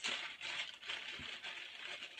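Rustling and crinkling of a crumpled sheet being handled, a continuous crackly rustle with small clicks, strongest at the start.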